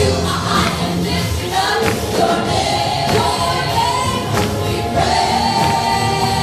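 A church worship team performing a gospel worship song live: several voices singing long held notes together over electric guitars and keyboard, with a few sharp percussion hits.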